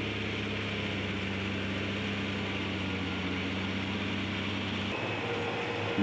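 Caterpillar 14H motor grader's diesel engine running at a steady, even pitch while its blade cuts the soil. About five seconds in, the engine hum gives way to a different machine's steady drone.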